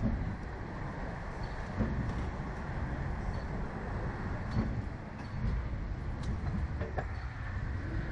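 Steady low rumble of wind buffeting the microphone of the camera mounted on the moving slingshot ride capsule, with a few faint clicks.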